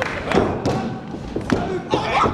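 A wrestler's body landing with a heavy thud on the ring mat from a top-rope dive, about a third of a second in, followed by more thumps of bodies on the canvas. Voices can be heard.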